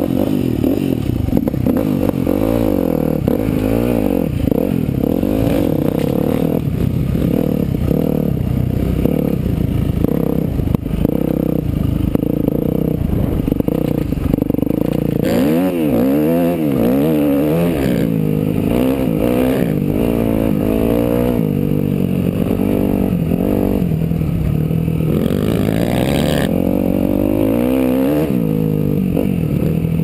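Dirt bike engine heard close up from on the bike, revving hard with its pitch rising and falling again and again as the rider works the throttle and shifts gears around a motocross track.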